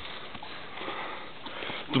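A person breathing hard, out of breath from a steep uphill hike.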